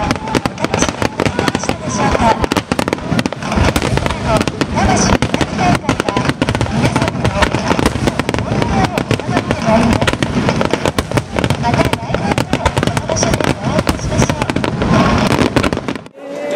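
Aerial fireworks bursting in rapid, overlapping succession during a festival's closing barrage: a near-continuous run of bangs and crackles.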